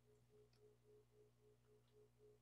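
Near silence: a faint steady hum with a faint tone pulsing about six times a second.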